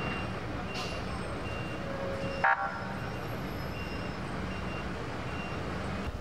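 Steady outdoor background noise with a low hum and faint voices. A short, loud pitched sound comes about two and a half seconds in, and faint short high tones recur throughout.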